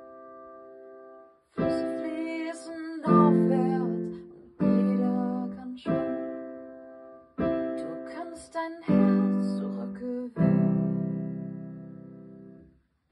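Electronic keyboard playing slow sustained chords, a new chord struck about every second and a half and fading away; the sound stops briefly once near the start.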